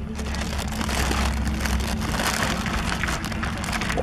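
Steady crackling, rustling noise close to the microphone, with a low rumble underneath. It starts suddenly at the beginning and covers the field sounds.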